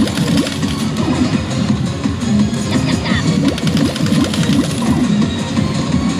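Pachislot hall din: loud electronic music from a Disc Up slot machine and the machines around it, with a cluttered wash of sound and many short clicks as reels are stopped and spun again.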